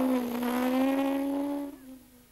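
Small jeep's engine running as it drives off, a steady hum that rises slightly in pitch and then fades away shortly before the end.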